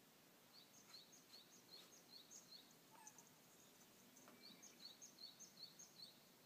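Faint song of a small bird: a quick, high two-note phrase repeated about two or three times a second, in two runs with a break around the middle.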